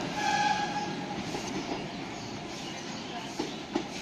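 Local diesel multiple-unit train running away along the track, its rail noise slowly fading, with a brief high squealing tone in the first second and a couple of sharp clacks near the end.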